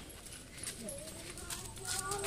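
Faint people's voices, with a few light clicks or taps in the second half.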